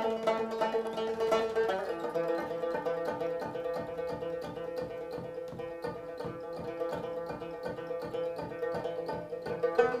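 A Tibetan dramyen, a long-necked plucked lute, strummed in a steady, quick rhythm of repeated plucked notes.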